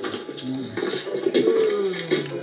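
A woman's voice drawn out in a cooing, sing-song chant, ending in a long falling glide in the second half.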